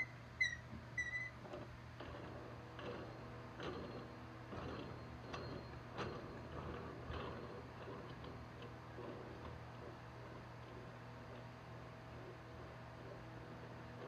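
Mini tire changer being taken apart by hand: a few short squeaks as the nut is spun off its threaded steel shaft, then scattered light clicks and taps of metal and plastic parts being handled, over a faint steady hum.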